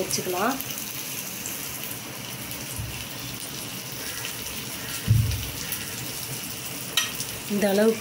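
Cabbage-and-egg mixture sizzling steadily on a hot iron dosa tawa as it is spread out with a spoon. A dull thud comes about five seconds in and a sharp click about two seconds later.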